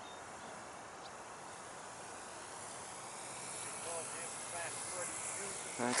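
Faint rush of air with a thin high whine, slowly growing louder, from an electric radio-controlled P-51 Mustang model gliding in low over the runway to land.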